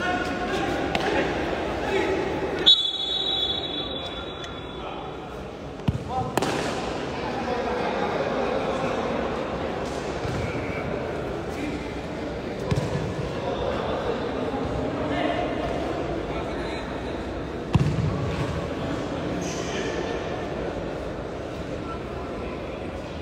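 Futsal ball kicked and bouncing on a hard indoor court, with sharp kicks a few seconds in, around six seconds in and again near the end. Players' and spectators' voices echo steadily through the large hall.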